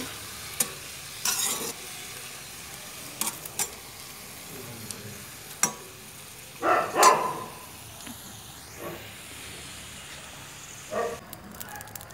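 Metal ladle scraping and stirring chunks of meat in a black iron wok, over a steady frying sizzle. The scrapes come at irregular moments, and the loudest is about seven seconds in.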